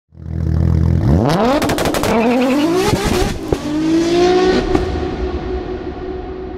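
A car engine idles briefly, then is revved hard several times, its pitch sweeping steeply upward, with several sharp cracks. It settles into a steady held note that fades away.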